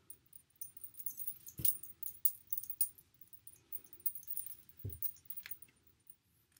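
Metal charm bracelet jingling in quick, small clicks as the arms work the hair into a braid. There is a faint rustle of hair, and two soft thumps come about one and a half seconds in and near five seconds.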